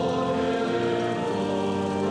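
Church choir singing a liturgical chant in held, sustained chords that shift partway through.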